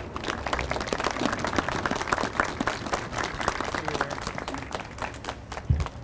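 A small audience applauding, many hands clapping at once. The clapping thins out near the end.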